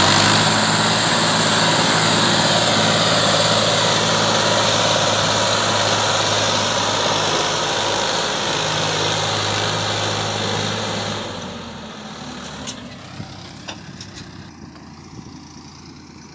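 Ford 3610 tractor's three-cylinder diesel engine running steadily at high throttle while pulling a loaded trolley of about six tons out of a field. About eleven seconds in, the engine sound falls away much quieter, and a few faint clicks follow.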